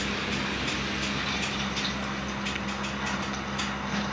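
A steady machine hum under a continuous hiss, with a few faint light clicks.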